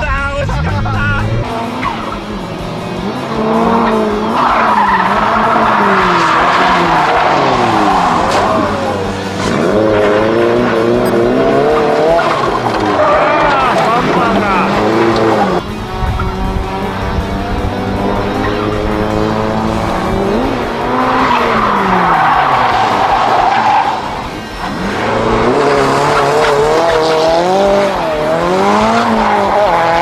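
Drift car at a circuit, its engine revving up and down over and over as it slides through the corners. The tyres squeal in long stretches, about five seconds in and again past twenty seconds.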